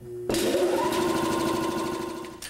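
Fan motor spinning up: a whine that rises in pitch and levels off within the first second, then runs steadily.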